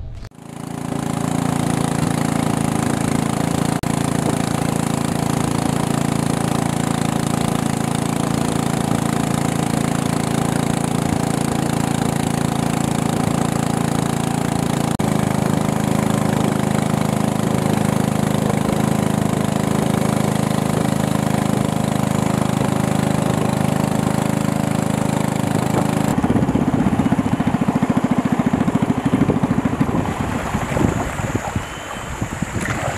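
Small engine of a wooden river longboat running steadily at speed. Its low drone shifts slightly about halfway through and turns rougher and more uneven for the last few seconds.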